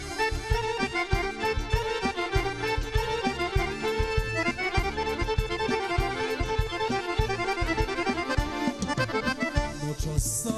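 Chromatic button accordion playing a fast instrumental lead in a Serbian folk tune, with rapid runs of notes over a steady drum beat.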